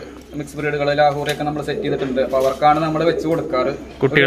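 Domestic pigeons cooing in a loft, heard together with a man's speech.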